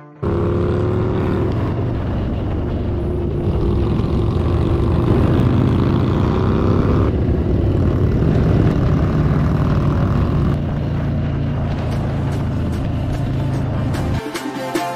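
Motorcycle engine running steadily at cruising speed, heard from the rider's seat together with wind noise on the microphone. It cuts in and out abruptly, with a couple of sudden changes in level partway through.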